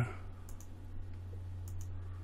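A couple of computer mouse clicks, one about half a second in and one near the end, over a steady low hum.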